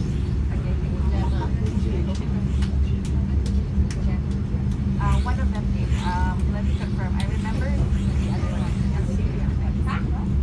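Steady low rumble of a moving passenger train, heard from inside the carriage. Passengers' voices chatter over it, most clearly about five to seven seconds in.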